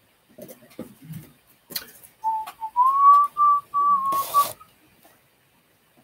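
A person whistling a short run of notes a couple of seconds in, one clear pitch that steps up slightly and then holds, with soft rustling and a brief burst of noise near the end.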